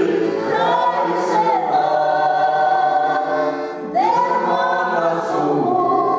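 A group of voices singing a song together to piano accordion accompaniment. After a short breath, a new phrase starts about four seconds in.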